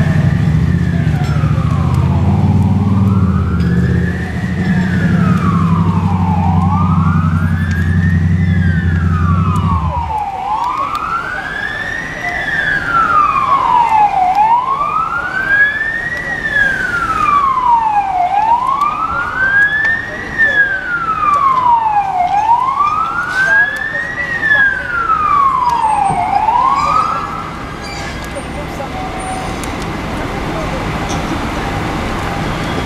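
Emergency vehicle siren wailing, sweeping slowly up and down about every four seconds, then stopping near the end. A low engine runs underneath for the first third and cuts off abruptly.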